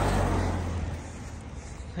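A car driving past close by. Its engine and tyre noise is loudest at the start and fades away as it moves off.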